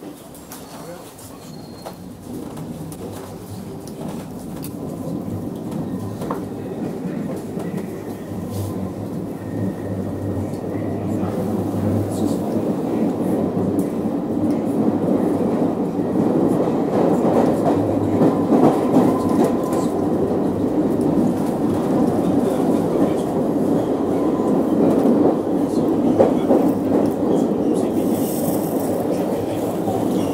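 London Underground Circle Line train pulling out of a station and picking up speed, heard from inside the carriage: the running noise grows louder over the first fifteen seconds or so, then holds steady as the train runs through the tunnel.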